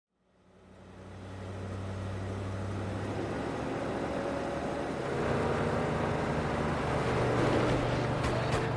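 Steady low vehicle engine drone fading in over the first couple of seconds, its pitch stepping up about five seconds in.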